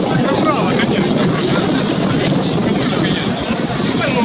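Steady din of a dense mass of cyclists riding past close by: many bicycles rolling and rattling together, mixed with the chatter of the riders.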